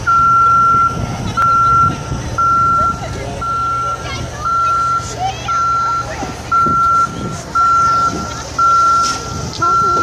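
Telescopic boom lift's motion alarm beeping steadily, about once a second, each beep a single high tone about half a second long, over a low steady engine hum.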